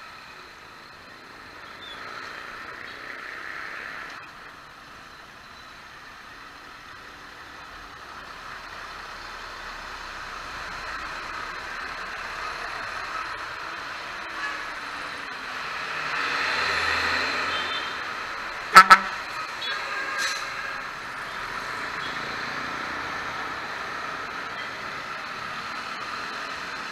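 A motorcycle riding in traffic on a wet road: a steady mix of engine, wind and tyre noise, with passing traffic swelling louder about two thirds of the way through. Two sharp clicks close together about 19 s in are the loudest sound, and a lighter click follows a second later.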